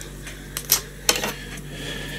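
A few light clicks of small fly-tying tools being handled at the vise, sharpest about half a second and a second in, over a faint steady hum.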